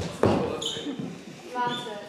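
Two sharp thumps at the start, the louder a quarter second in, each ringing briefly in a large room. About one and a half seconds in comes a short high-pitched vocal sound.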